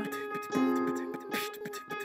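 Digital piano playing soft, held chords, with a new chord struck about half a second in and again past the middle.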